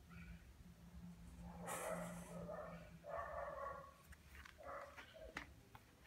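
A Lhasa Apso making three short, soft vocal sounds, about two, three and nearly five seconds in.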